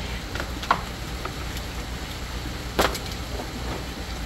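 A few knocks and clatters of hard plastic being handled, the loudest about three seconds in, over a steady low hum.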